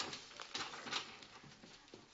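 A few faint taps or knocks, about half a second apart, over quiet room tone.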